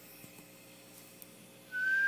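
Faint room tone, then near the end a person starts whistling one long, steady high note.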